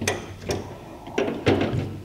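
Metal clanks and knocks from a valve spring compressor being worked loose and pulled off a cylinder head's valve spring, four sharp knocks in two seconds.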